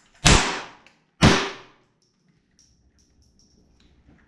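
Two .22LR rifle shots from a 3D-printed AR-15-based FamAR fired into a steel bullet box, about a second apart, each shot ringing briefly in the small room.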